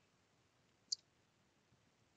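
Near silence, broken by one brief click a little under a second in.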